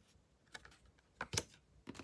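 Cards being handled and laid on a wooden tabletop, giving a few short taps and clicks, the loudest pair about a second and a half in.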